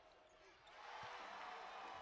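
Near silence giving way to faint basketball arena ambience with distant voices, and a single basketball bounce about a second in.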